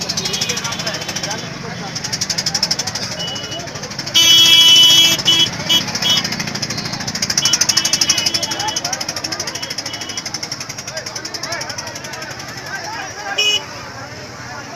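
Fast, continuous procession drumming in a rapid, even roll over the voices of a crowd. About four seconds in, a loud high-pitched tone sounds for about a second and a half, and a shorter one comes near the end.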